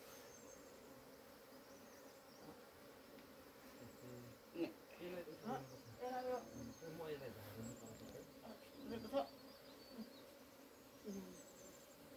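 A colony of honeybees buzzing around a wooden hive box, a faint, even hum.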